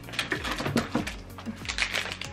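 Quick clicks and rustles of small items being handled, with a plastic wrapper crinkling, over soft background music.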